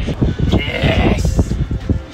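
Freshly landed dolphinfish (mahi mahi) thrashing and thumping on a fibreglass boat deck, with wind buffeting the microphone. A brief high call-like voice sounds around the middle.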